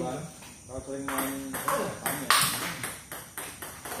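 Table tennis ball being struck by bats and bouncing on the table in a practice rally: a run of sharp clicks, the loudest just after two seconds in.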